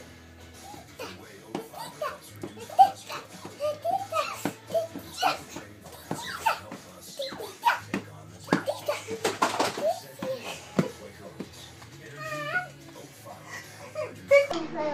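Young children playing: wordless babbling, squeals and giggles with bumps and knocks, including one sharp knock about three seconds in, over music from a television in the background.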